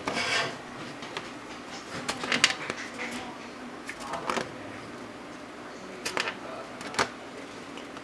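A Lite Brite peg punching holes through black paper on the Lite Brite's plastic pegboard: irregular short clicks and taps, about one a second, with light handling noise between them.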